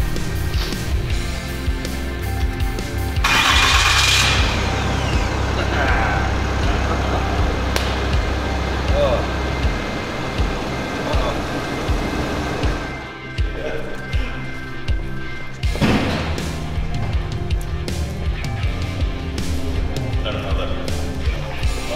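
A Cummins turbo-diesel pickup engine cranking and starting about three seconds in, then running, under background music.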